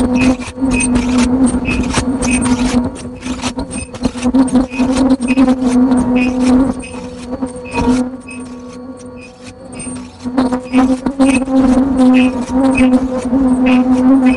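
Automatic face-mask production machine running: a steady hum overlaid with rapid, continual mechanical clicking, quieter for a couple of seconds past the middle.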